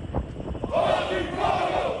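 A formation of armed police officers shouting together in unison, one loud massed shout of many voices lasting about a second, starting near the middle. A couple of sharp knocks come just before it.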